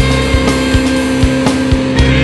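Instrumental passage of a post-punk/shoegaze rock song: a steady drum beat, a few strikes a second, under sustained, droning guitar chords.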